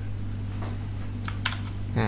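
A few light clicks at the computer, one about half a second in and a quick cluster of them near the end of the first second and a half, over a steady low hum.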